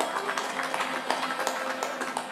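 Accordion and acoustic guitar playing live, with short sharp strokes of strumming and hand claps from the audience.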